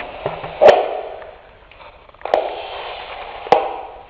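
Three sharp knocks about a second and a half apart, each with a short ringing, over a faint steady hiss.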